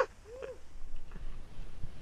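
A short whooping call about half a second in that rises then falls in pitch, from the skier. It is followed by the low rushing of skis through deep powder snow.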